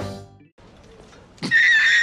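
A brief lull, then about one and a half seconds in a man bursts into loud laughter that opens on a high, wavering squeal.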